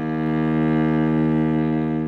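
Cello playing one long, steady low note on a single down-bow during two-octave minor scale practice, starting to fade near the end.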